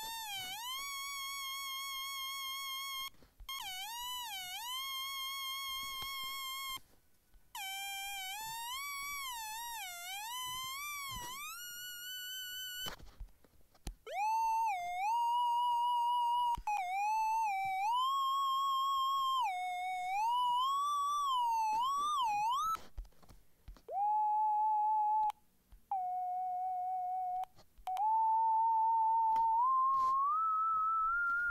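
Chrome Music Lab's Oscillators synth tone, high-pitched and bent up and down in short swooping phrases with brief breaks. It is a buzzy sawtooth wave for the first dozen seconds, then a smoother triangle wave, then a nearly pure sine tone for the last few seconds, which rises at the very end.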